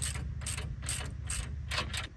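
Hand ratchet wrench clicking as a suspension bolt is turned, in short repeated strokes about two to three a second.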